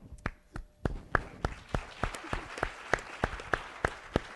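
Audience applauding, with one person's claps close to the microphone standing out sharply at about three a second.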